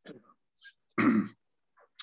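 A man clearing his throat: a few faint rasps, then one loud, short clearing about a second in.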